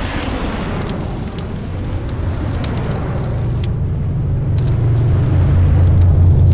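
Logo-reveal sound effect: a sudden hit, then a deep rumble with crackling like burning flames that grows steadily louder.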